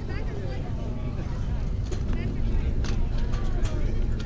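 Scattered voices of players and spectators at a youth baseball game, heard at a distance over a steady low rumble, with a few faint clicks.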